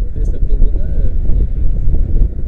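Wind buffeting the camera microphone, a heavy low rumble, with a muffled voice talking over it in the first part.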